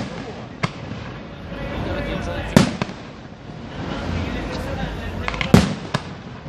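Aerial firework shells bursting overhead: a small bang just under a second in, then two loud booms about three seconds apart, the last with a few sharp cracks around it.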